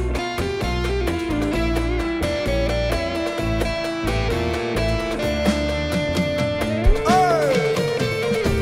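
Live rock band playing an instrumental introduction: electric guitar over bass, keyboard and drums, with no singing yet. About seven seconds in a note slides up and back down.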